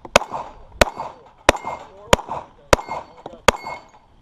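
Gen 3 Glock 21 .45 ACP pistol firing six shots at an even pace, roughly two-thirds of a second apart. Each shot is followed by a short metallic ring as the bullet strikes a steel plate.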